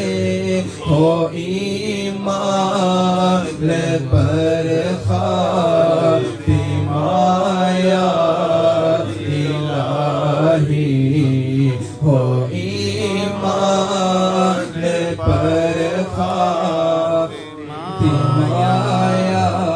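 A man chanting a devotional supplication into a microphone in a slow, drawn-out melody. He holds long, wavering notes, with a few short breaks for breath.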